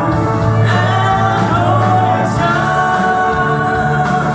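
Live band music: a lead singer's voice carries a melody over electric guitars, bass guitar and drums, playing continuously.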